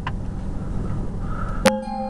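Low steady rumble of a car heard from inside the cabin. A sharp click comes about a second and a half in, and music starts with sustained bell-like tones.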